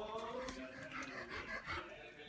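A dog whining, its pitch wavering up and down.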